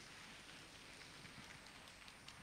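Faint audience applause, an even patter of many hands clapping.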